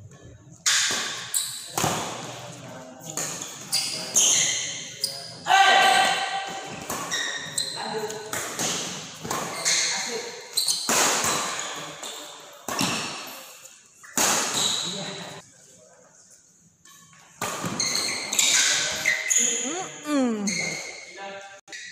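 Badminton rally: rackets hitting the shuttlecock again and again, sharp cracks that ring on in a large, echoing hall, with a short lull before the hits start again.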